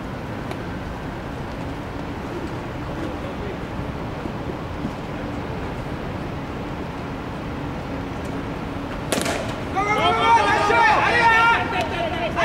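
Open-air ballfield background with faint distant voices, then a single sharp smack of the baseball on contact about nine seconds in, followed at once by loud shouting from the players.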